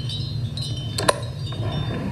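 Chimes ringing lightly over a steady low hum, with two sharp clinks close together about a second in, as eerie atmosphere for a séance.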